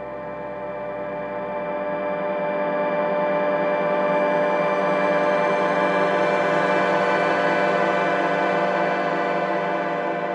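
Instrumental music with no singing: a held chord of many steady notes from an orchestral arrangement, slowly swelling louder over the first few seconds and easing off near the end.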